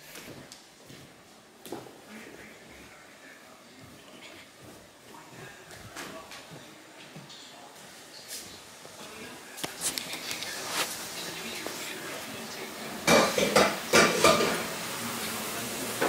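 Kitchen clatter of dishes and cutlery: scattered light clicks and knocks that grow louder, then a few loud clattering bursts near the end, with faint voices in the background.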